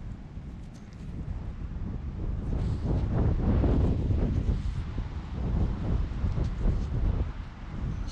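Wind buffeting the microphone: a gusty low rumble that swells louder in the middle.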